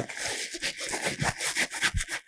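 Fabric of a soft-sided duffel bag rustling and rubbing in short irregular scrapes as an interior divider is pulled and pushed back into place.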